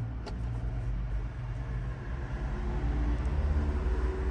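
A low, steady rumble inside a car cabin, with a faint hum that grows slightly louder toward the end.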